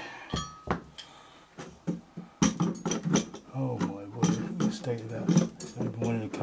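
Sharp metal clinks and knocks from the immersion heater and screwdrivers being handled at the hot-water tank's opening, several in the first two or three seconds, followed by a voice.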